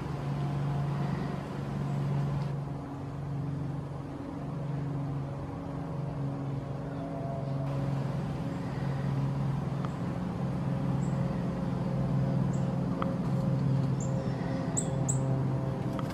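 A steady low mechanical hum, like a running motor or engine, with a few short high bird chirps in the last five seconds.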